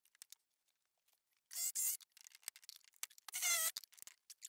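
Hand tool working metal and wood at the wall framing around a punctured copper pipe: small clicks and taps, and two short squealing scrapes about a second and a half apart.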